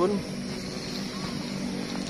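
A steady engine hum with a constant pitch, running without change.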